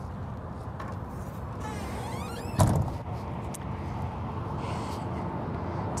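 A metal storage-bay door on a motorhome's side swinging shut with one low thump about two and a half seconds in, just after a brief rising squeak, over steady outdoor background noise.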